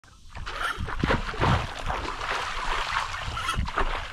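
Irregular splashing and sloshing of shallow river water, loudest about a second and a half in.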